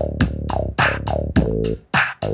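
G-funk pattern playing from a Roland MC-303 groovebox, its MIDI also driving an Alesis QS-6 synthesizer for extra sounds: crisp drum-machine hits several times a second over a held, rolling bass line.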